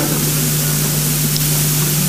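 Steady hiss with a constant low hum, no speech: the background noise of the room's sound pickup.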